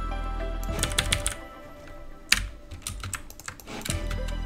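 A DJ scratch sample from a drum kit sounding in short stabs as notes are placed in a piano roll, mixed with mouse clicks, over a low steady music bed.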